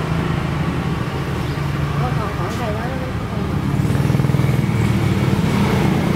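Steady engine hum of nearby road traffic, a low motor drone that grows louder about halfway through.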